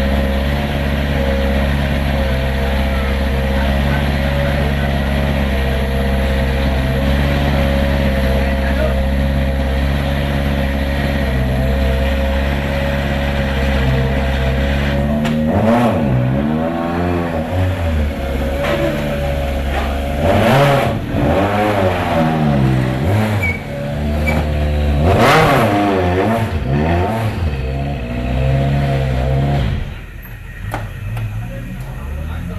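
Citroën C4 WRC rally car's turbocharged four-cylinder engine idling steadily while being warmed up. About halfway through it is blipped repeatedly, the revs rising and falling every second or two.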